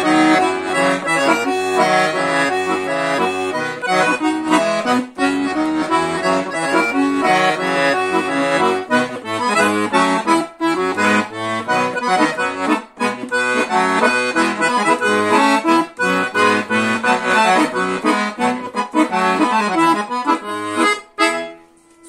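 Scandalli 120-bass professional piano accordion played with both hands on its organ register: a melody on the treble keyboard over bass and chord buttons. The playing breaks briefly between phrases and stops about a second before the end.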